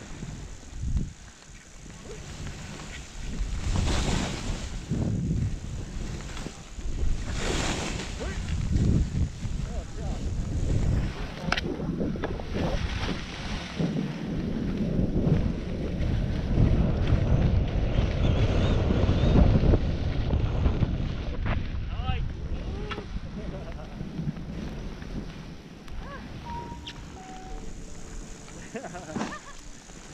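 Wind rushing over an action camera's microphone while skiing downhill, mixed with the hiss and scrape of skis sliding on snow. It surges a couple of times early on and is loudest through the middle, where the skier is going fastest.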